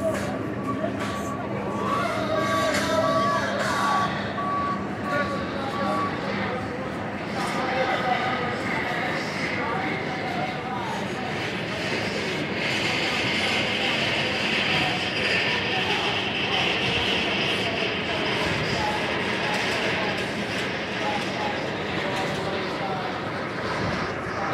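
A steel roller coaster train running along its track, a broad rushing noise that builds about halfway through and holds for several seconds before easing off. A steady high tone sounds over the first few seconds.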